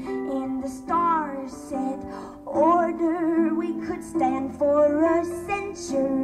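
A woman singing to her own harp accompaniment: sung phrases that slide in pitch over plucked harp notes that ring on, with new notes struck every second or so.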